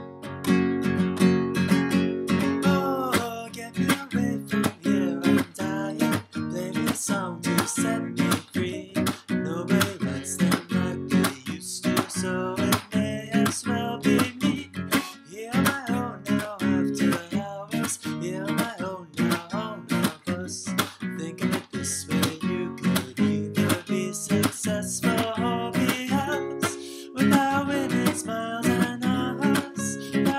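Nylon-string classical guitar strummed in a steady rhythm, playing chords with ringing notes. There is a brief break a few seconds before the end, then the playing comes back fuller.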